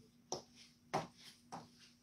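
Boots stepping on a hardwood floor as a woman walks: three sharp steps about two-thirds of a second apart, over a faint steady hum.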